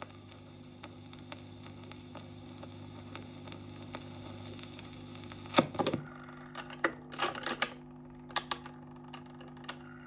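Vintage Dansette Major record player after the song has ended: the stylus runs in the run-out groove with faint surface noise, occasional soft clicks and a steady hum. About five and a half seconds in, the autochanger mechanism clatters with a run of sharp mechanical clicks as the tone arm lifts off the record and swings back to its rest.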